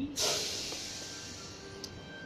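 A sudden hiss of compressed air released from an electric passenger train standing at the platform. It is loud at first and fades away over about a second and a half, with a small click near the end.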